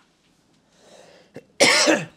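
A man coughs once near the end, a single short, harsh burst after a faint breath.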